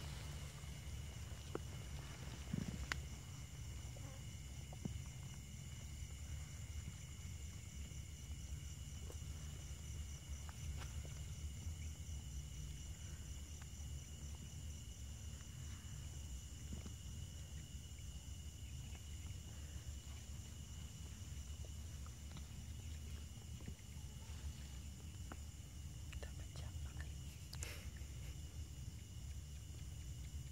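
Night insects trilling steadily at a high pitch, over a low rumble from the handheld camera, with a few faint rustles and clicks.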